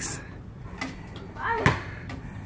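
Outdoor quiet, a faint voice, then one sharp knock near the end.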